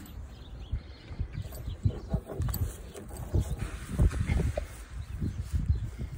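A Holstein steer moving about on grass while being led on a rope halter: irregular low thumps and shuffling, with a few brief faint animal sounds.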